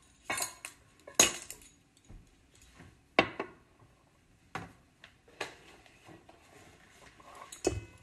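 Metal measuring spoons clinking and tapping against a stainless steel mixing bowl: about six sharp clinks, irregularly spaced, the loudest about a second and three seconds in.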